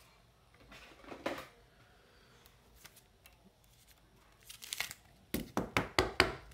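Trading cards being handled on a tabletop: a soft rustle about a second in, then a quick run of sharp clicks and rustles near the end as cards are slid apart and set down.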